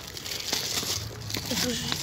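Clear plastic wrapping crinkling as a wrapped pencil case is handled and turned over.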